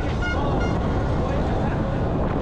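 Rushing wind and tyre noise on a helmet-mounted camera as a downhill mountain bike descends a dirt track at speed, with spectators shouting briefly about half a second in.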